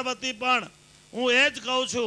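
A man speaking into a microphone in two short phrases, with a brief pause about a second in. A steady low mains hum runs underneath.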